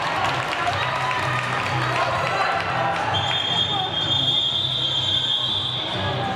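Crowd noise and thuds of skates on a sports-hall floor, with a referee's whistle sounding one long steady blast from about three seconds in to the end.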